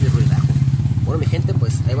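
An engine idling steadily close by: a loud, even low rumble with a fast regular pulse.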